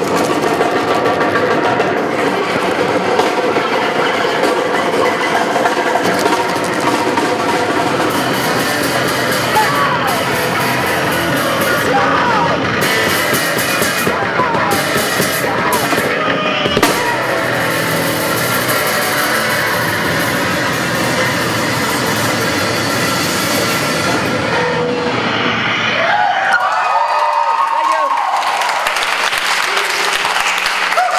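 Live rock band playing loud, with electric bass, guitar and drum kit. About four seconds before the end the drums and low end stop, leaving wavering guitar noise over a low steady hum.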